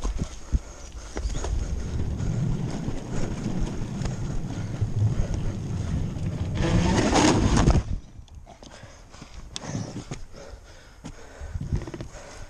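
Bicycle ridden fast, with tyre and frame rattle over the ground and wind rumble. About seven seconds in comes a loud, rough scrape lasting about a second, which cuts off suddenly: the bike sliding out and going down on slippery wooden boardwalk. Scattered small knocks follow.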